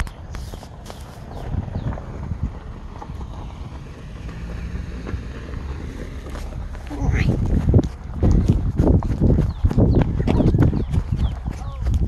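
A person running while carrying a phone: footsteps and jostling thumps on the microphone start about seven seconds in and come thick and uneven. Before that there is only a low rumble of the phone being handled.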